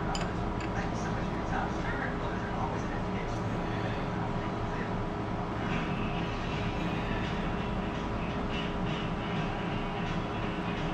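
Steady whir and hum of a running shop fan, with a few faint metallic ticks from a gear puller's screw being turned by hand in the second half.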